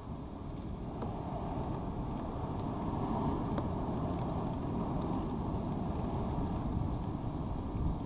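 A low, distant engine rumble, swelling gradually over the first few seconds and then holding steady.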